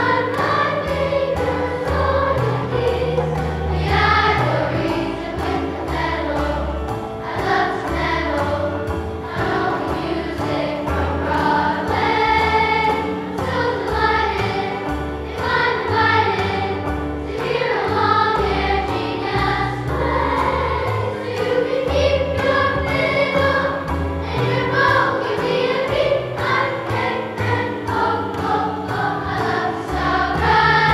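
Children's school choir singing over instrumental accompaniment with a steady beat.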